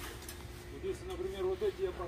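Faint voices talking over a steady, even hum.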